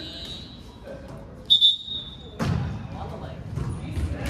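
Sounds of an indoor volleyball game in an echoing gym. About a second and a half in comes a short, shrill high-pitched tone, the loudest sound here, from a whistle or a shoe squeaking on the floor. About a second later there is a sharp thud of an impact.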